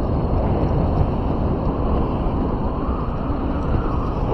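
Steady road and wind rumble of a vehicle driving along a paved road, picked up from the moving vehicle itself, with no distinct events.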